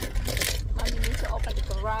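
Steady low car-cabin rumble under a man's voice, with a brief metallic jingle about half a second in.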